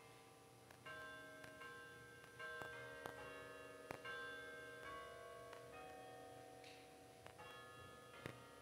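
Church organ playing softly, sustained chords with held notes that change about every second.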